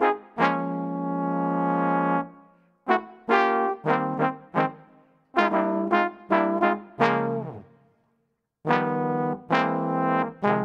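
A four-part trombone section, one player multitracked, plays a big-band figure as a series of short, crisp notes with sharply stopped ends and one longer held chord about half a second in. The hard-tongued, tongue-stopped articulation gives the notes the bite and zip of jazz section playing.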